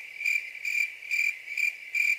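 Cricket chirping in an even rhythm, a little over two high chirps a second. It is a stock crickets sound effect cut in where the music stops, the gag for an awkward silence.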